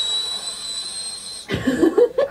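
A girl's high, steady vocal whine that sounds like a drill, which she can make because she is sick. It holds one pitch for about a second and a half, then breaks off into laughter.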